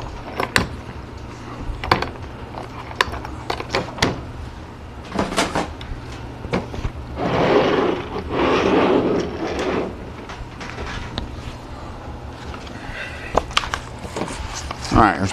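Workbench handling noises: scattered light knocks and clicks, and about halfway through two longer scrapes, about a second each, as a plywood book press is slid across a cutting mat. A steady low hum runs underneath.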